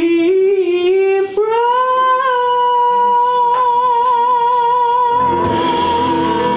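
A female jazz vocalist sings a rising phrase that leaps up to a long high note, held with vibrato for about four seconds with almost nothing under it. About five seconds in, the band comes back in underneath with piano and cymbals.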